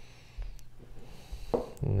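Chef's knife cutting and scraping chicken knee cartilage off bones on a plastic cutting board: quiet knocks and scrapes, with a soft low thud about half a second in.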